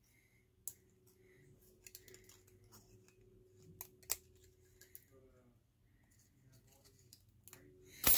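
Near silence with a few faint clicks and small paper ticks as die-cut cardstock pieces are popped out of a thin metal cutting die; the sharpest click comes about four seconds in.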